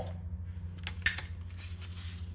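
Steady low hum in the background, with a few brief clicks and rustles about a second in from a wiring harness and tools being handled on the bench.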